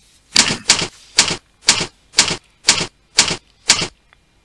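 Presentation slide-transition sound effect: eight sharp, evenly spaced strokes, about two a second.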